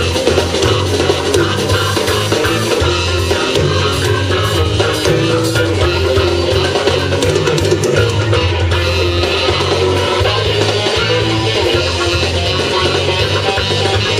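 Live band playing loud, amplified instrumental music, with drum kit and electric guitar over bass.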